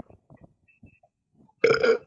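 A short vocal sound from a person about one and a half seconds in, lasting under half a second, after a stretch of near quiet broken only by faint small clicks.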